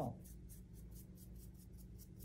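Paintbrush strokes on a craft-foam leaf: faint, quick brushing scratches, several a second.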